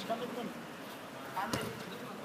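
Faint voices on the pitch, with one sharp thud of the football about one and a half seconds in.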